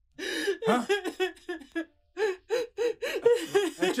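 A person's voice giving short gasping, voiced sounds and a brief exclamation, in a string of quick breaks between bursts.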